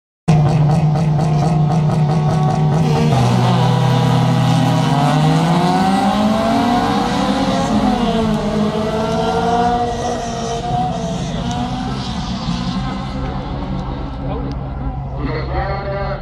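A grid of race car engines held at high revs, then the cars accelerating away from a standing start, their pitch climbing through the gears with a drop near the middle, fading as they pull away.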